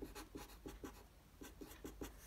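Felt-tip marker writing a word on paper: a quick run of short, faint strokes.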